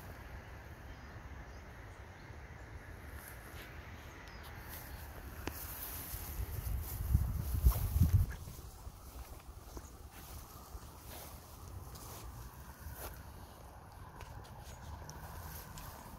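Outdoor field ambience with a low rumble on the microphone that swells for a couple of seconds about halfway through, and scattered faint clicks.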